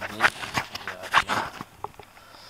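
A man talking in French, with a few short knocks among the words.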